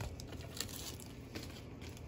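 Plastic packets of metal cutting dies being handled: faint crinkling and a few light clicks, with a sharper click right at the start.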